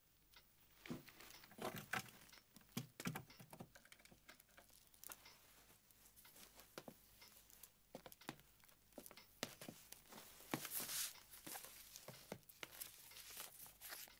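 Faint rustling of paper and scattered light clicks and knocks as writing paper and desk things are handled in a quiet room, with a somewhat longer rustle about eleven seconds in.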